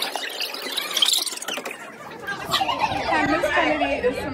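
Several people chattering, their words unclear, growing more prominent a little over halfway through.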